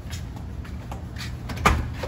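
Front door being unlocked and opened: a few faint handling clicks, then one sharp latch click near the end.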